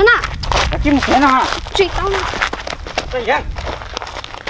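Raised human voices calling out in short, pitch-swooping cries during a struggle, over a low wind rumble on the microphone.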